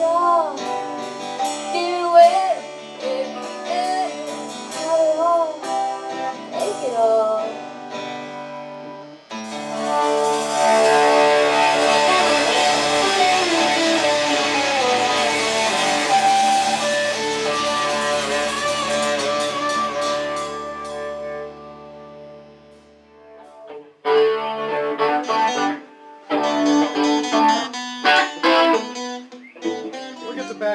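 A rock band rehearsing live on electric guitars, bass guitar and drums. Bending guitar notes give way about nine seconds in to the whole band playing loud and sustained. That dies away around twenty-two seconds, and short stop-start guitar phrases follow.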